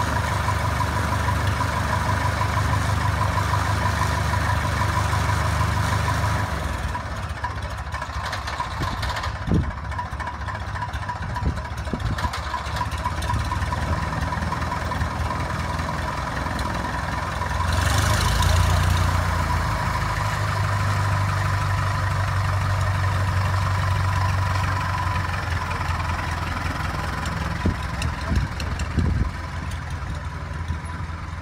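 Aeronca 11AC Chief's small four-cylinder engine idling on the ground, a steady drone that drops a little about six seconds in and rises again about halfway through.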